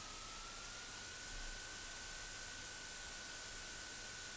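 Steady electrical hiss from an aircraft intercom audio feed, with a thin, faint whine that rises slightly in pitch within the first second and then holds steady.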